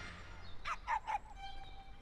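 Music fading out, then a few short, faint animal calls with bending pitch, clustered about half a second to a second in, and a faint held tone after them.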